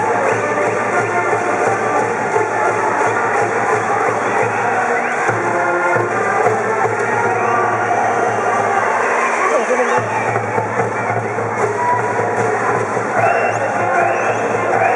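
High school brass band playing a baseball cheer song (ōenka), with a cheering section of students chanting and shouting along.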